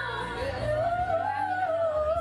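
A woman singing into a corded karaoke microphone over a backing track. About half a second in she rises into a long, wavering high note and holds it.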